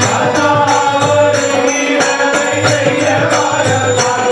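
Men's voices singing a traditional Hindu devotional bhajan together, with small hand cymbals struck in a steady beat.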